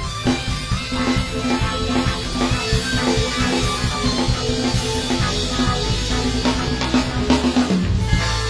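Instrumental band music: a drum kit keeping a steady beat under bass and guitar, with no singing. The music drops out briefly near the end.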